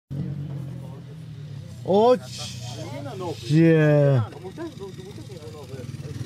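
ATV engine idling steadily through an aftermarket slip-on exhaust, run without its dB killer. Two loud shouts cut over it, a short one about two seconds in and a longer one just before the middle.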